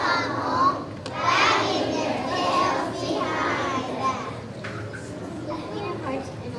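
Many young children's voices chattering and calling out at once, livelier in the first few seconds and quieter after about four seconds.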